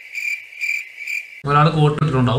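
Cricket-chirp sound effect used as the comic 'awkward silence' gag: a high, even chirp repeating about twice a second. It cuts off sharply about one and a half seconds in, as a man starts talking.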